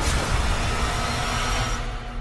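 Trailer sound-design hit: a sudden impact at the start, then a loud rushing rumble that thins out near the end, with faint sustained tones underneath.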